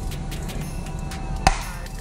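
A single sharp hand slap, a high five, about one and a half seconds in, over background music.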